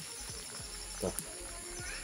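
Steady high-pitched chirring of night insects, with a brief spoken syllable about a second in.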